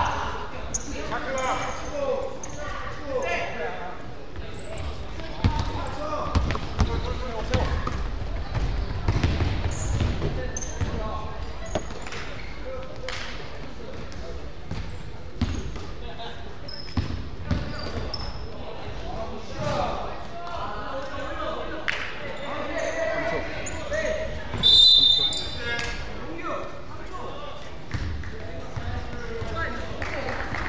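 Basketball game in an echoing gym: a ball dribbling on the court, sneakers squeaking and players calling out. About three-quarters of the way through there is one short, shrill whistle blast, the loudest sound here, typical of a referee's whistle.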